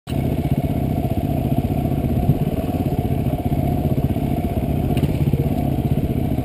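Dual-sport motorcycle engine running steadily with a rapid, even pulse, heard from on the bike itself as it rides slowly along a dirt road.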